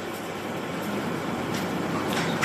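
A pause between a man's sentences: only steady room noise, an even hiss with no words.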